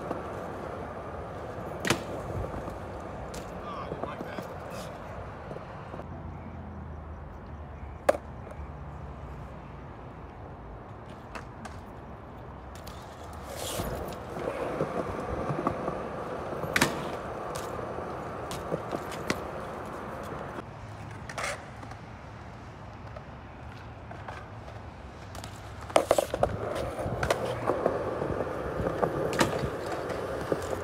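BMX bike rolling over skate-park concrete, the tyre noise swelling twice, with a few sharp knocks and clacks as the bike lands and hits ledges.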